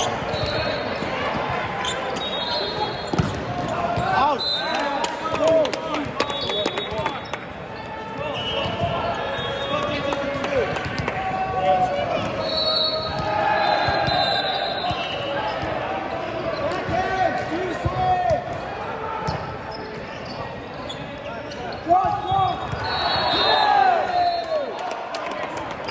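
Indoor volleyball play in a large echoing gym: players shouting and calling to each other, sneakers squeaking on the court floor, and the thuds of the ball being hit and landing, with a loud hit near the end.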